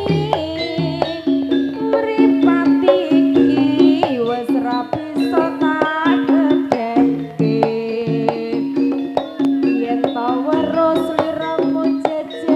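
Live Javanese campursari music: a woman singing with vibrato into a microphone over a band of steady pitched instruments and frequent drum strokes.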